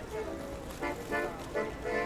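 A street accordion playing sustained notes over the steady low rumble of city traffic, with people talking as they pass.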